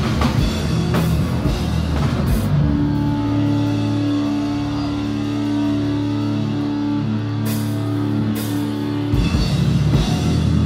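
A loud live heavy rock band plays drums, distorted guitar and bass. About two and a half seconds in, the drumming drops away and a sustained chord is left ringing, with a couple of cymbal hits. Just before the end the full band comes back in.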